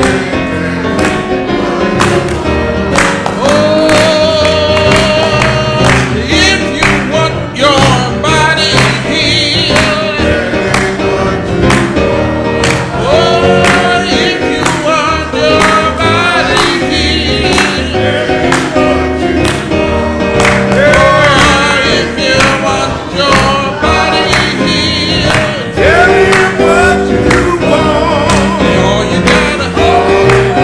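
A woman singing a gospel song into a microphone with strong vibrato, accompanied by piano chords and other voices joining in. Handclaps keep a steady beat throughout.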